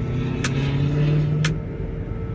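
Tower crane machinery humming in the operator's cab. A deeper drive tone swells about half a second in and fades near the end, and two sharp clicks come about a second apart.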